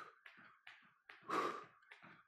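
Jump rope being skipped in a boxer skip: faint light taps of the rope and feet, about two or three a second, with one loud breath out about one and a half seconds in.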